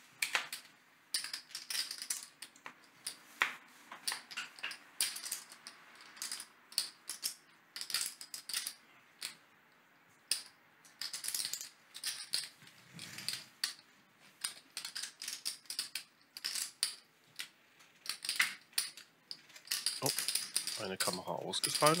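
Clay poker chips clicking together in irregular clusters as players handle and stack them.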